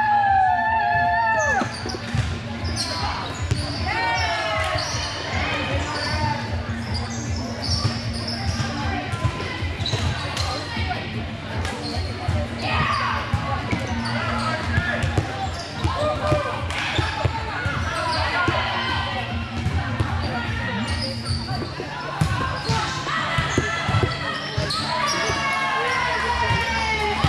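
Indoor volleyball gym: volleyballs bouncing off the sport-court floor and being hit, with many short knocks throughout, among players' and spectators' voices calling out, including a loud shout right at the start, all in a large hall.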